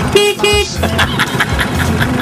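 Scooter horn beeping twice, two short toots of one steady pitch about a quarter second each.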